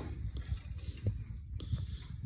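Handling noise from a hand-held phone: an irregular low rumble with a few faint clicks.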